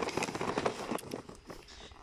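Plastic gift bag crinkling and rustling as a rabbit is lifted out of it, a quick run of crackles that thins out and fades in the second half.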